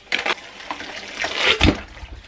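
Granulated sugar pouring from a plastic jug in a steady stream into hot whey, a grainy hiss that grows louder, with a low thump about one and a half seconds in.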